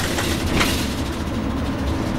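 Cabin noise of a 2009 NABI 416.15 transit bus under way: a steady low engine and road rumble with rattling from the interior fittings, including a sharper rattle about half a second in.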